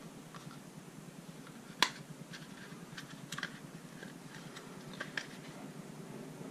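Small clicks and light handling noises from a Bersa Thunder 9 Pro XT pistol's metal frame and grip panel being handled and fitted by hand, with one sharper click a little under two seconds in and a few fainter ones later.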